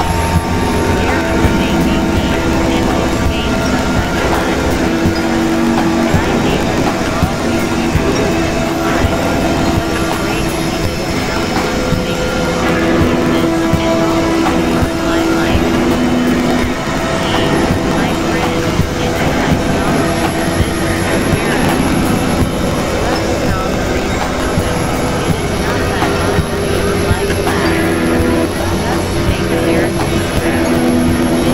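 Experimental electronic noise-drone music: a dense, grainy wash of noise with held synthesizer drone tones that come and go every few seconds.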